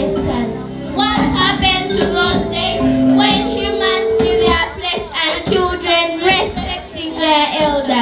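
Children singing a song with musical accompaniment, a mix of held notes and wavering melody lines.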